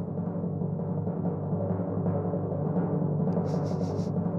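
A low, continuous drum roll in the soundtrack music, a suspense roll held while a character gets ready to taste something new.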